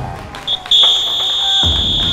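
A short high-pitched tone, then a long steady one lasting about a second and a half, like a signal beep or whistle blast. Background music comes in under it near the end.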